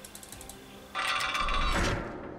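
Mechanical gear sound effect for an animated logo: faint ratcheting clicks, then about a second in a sudden loud whirring, clanking sweep with ringing tones that lasts about a second and fades.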